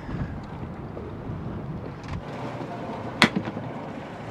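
Sailboat's engine running in reverse against the set anchor, its low rumble dropping away about halfway through as it is taken out of gear. A single sharp click follows about a second later.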